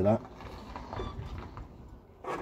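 Faint mechanical noise as the four-cylinder engine of a long-stored 1977 Ford Capri II 1300 is turned over by hand to check that it is free and not seized.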